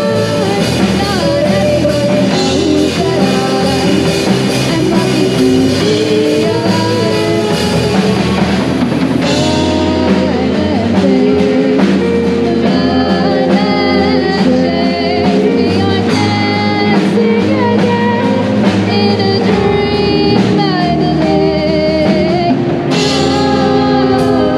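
Live rock band playing a cover: a female lead voice singing with backing singers, over electric guitar, bass guitar, keyboard and a drum kit.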